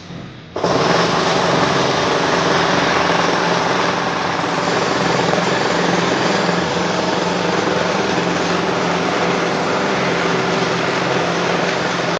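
An engine running loudly and steadily, starting abruptly about half a second in.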